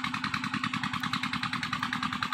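An engine running steadily with a fast, even beat.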